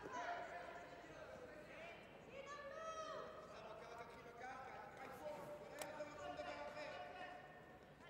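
Faint voices calling out in a large sports hall, with two brief sharp knocks about five and six seconds in.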